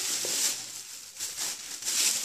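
Thin plastic bags rustling and crinkling as groceries are handled, loudest at the start and again near the end.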